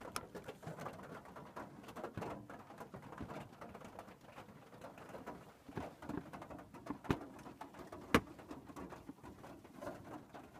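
Rain pattering on the roof overhead, an irregular crackle broken by a few sharper taps, the loudest about eight seconds in.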